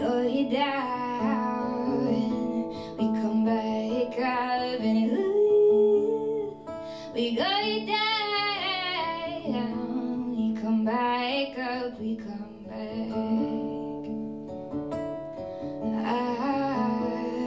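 A woman singing a ballad live over acoustic guitar, in separate sung phrases with short pauses between them and one long, higher phrase in the middle.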